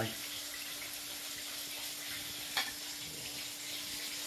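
A steady background hiss with a faint low hum under it. A single light click of cutlery against a plate comes about two and a half seconds in.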